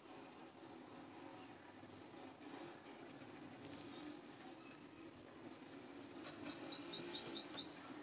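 A small bird chirping: a few scattered short falling chirps, then near the end a fast run of about a dozen falling notes, about five a second, the loudest sound here. Underneath is a faint steady background hum.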